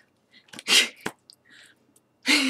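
A woman's stifled laugh: a short breathy burst through the mouth and nose about half a second in, then a few faint breaths.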